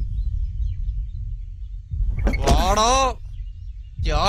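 A man's single drawn-out shout, about two seconds in, over a low steady rumble.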